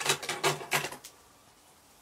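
Scissors clicking: four or five quick sharp clicks in about the first second, then quiet.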